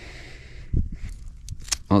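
Handling noise from a pair of shears at a trout's gills: a soft knock, then a few small sharp metallic clicks of the blades just before the cut, with a man beginning to speak at the very end.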